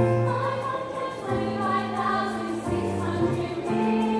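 Teenage choir singing in harmony, holding long chords that change about every second.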